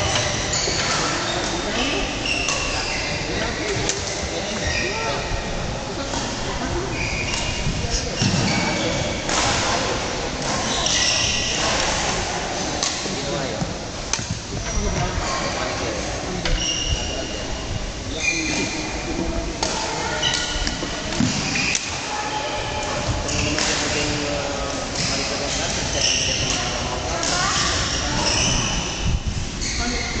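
Badminton singles rally: rackets striking the shuttlecock again and again and court shoes squeaking in short high chirps on the floor as the players move.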